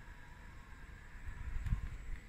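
Quiet outdoor background: a low rumble of wind on the microphone that swells about one and a half seconds in, under a faint steady hum.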